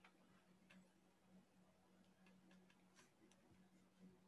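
Near silence: faint room tone with a low steady hum and a few scattered faint clicks.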